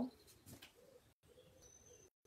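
Faint low bird cooing, heard twice over near silence.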